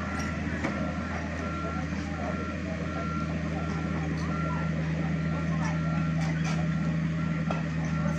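Komatsu mini excavator's warning alarm beeping steadily, about four beeps every three seconds, over its diesel engine running, which grows a little louder partway through.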